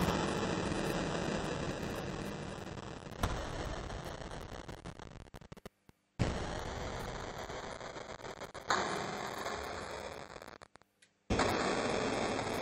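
Heavily distorted, effects-processed electric guitar, struck in noisy chords that start suddenly and fade, five times about two and a half seconds apart, with a thin high ringing tone over them that shifts in pitch partway through.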